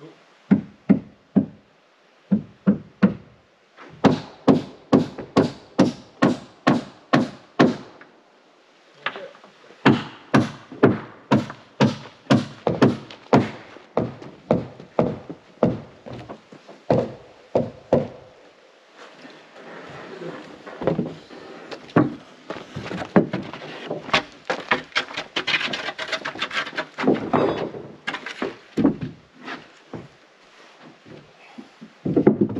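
Hammer driving nails into wooden wall framing: runs of steady strikes about two a second, with short pauses between runs. In the second half the blows come denser and overlap over a rougher noise.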